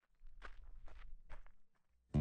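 A handful of faint, soft taps spread over about a second and a half.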